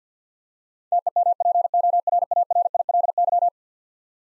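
Morse code at 50 words per minute: a single mid-pitched tone keyed in a rapid run of dits and dahs for about two and a half seconds, starting about a second in, spelling the word "temporarily".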